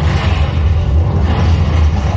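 Soundtrack of an animated film played loud through a 5D cinema's speakers: music over a heavy, steady bass rumble.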